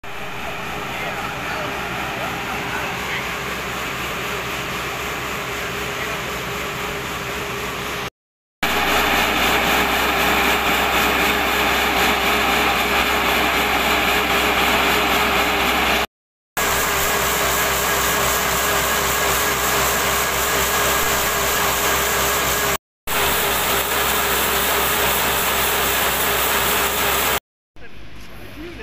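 Engine of a truck-mounted mobile water pump running steadily, pumping floodwater out through a long discharge hose. The steady machine sound is quieter for the first eight seconds, then louder, and breaks off abruptly into short silences three or four times.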